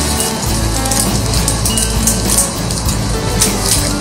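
Background music with held tones and a steady bass line.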